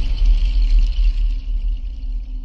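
Steady deep bass rumble from a TV channel's logo ident, with faint music over it.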